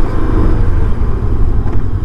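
Macbor Montana XR5 parallel-twin motorcycle under a hard brake test: a steady low rumble of engine and riding noise while the rear and front brakes are applied, enough to trigger the rear wheel's ABS.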